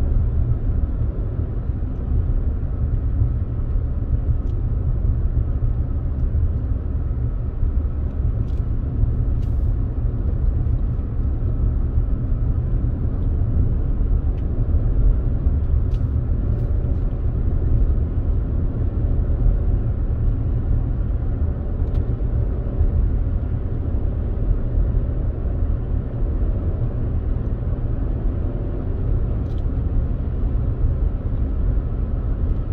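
Steady road and engine noise of a Toyota RAV4 heard from inside the cabin while cruising at a constant speed: an even low rumble with a few faint ticks.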